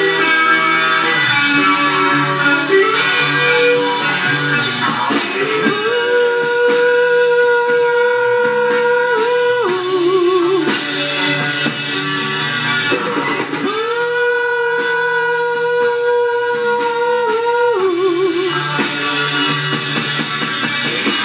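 Live rock band with electric guitars, bass and drum kit playing a slow song. A lead note is held twice for about four seconds each time, sliding up into it and ending in a quick waver.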